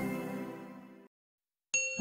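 Logo-intro music dying away over the first second into a brief silence, then a bright, ringing chime near the end.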